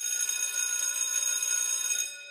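A ringing bell sound effect starting suddenly, high-pitched and steady, dying away at the end.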